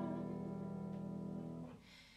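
Grand piano chord held and slowly dying away, cut off abruptly about one and a half seconds in.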